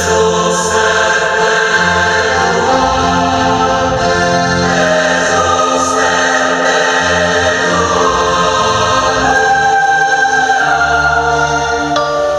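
Choral music at a concert: sustained choir-like chords that shift to a new chord every few seconds, with no drums.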